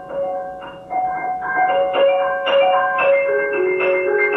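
Solo grand piano playing, a stream of struck notes in the upper-middle register ringing over one another. It grows louder and busier about a second in, and lower notes come in near the end.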